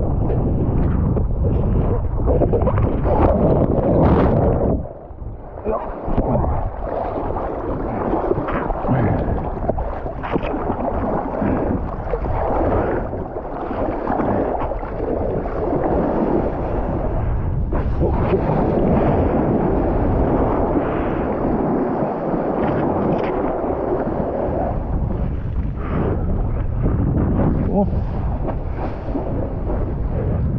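Strong wind buffeting the camera microphone over rushing, splashing water as a kitefoiler rides across choppy water; the noise dips briefly about five seconds in.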